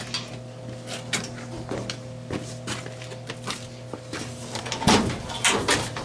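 A laser cutter's metal rear access panel being unlatched and taken off: a run of small clicks and knocks, with a louder clatter about five seconds in, over a steady low hum.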